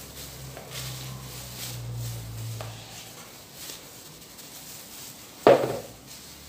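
Quiet kitchen handling: a spoon dropping and pushing thick mousse filling onto a cake layer in a plastic-lined metal cake pan, with light clicks and plastic-wrap rustle, and a brief louder sound about five and a half seconds in.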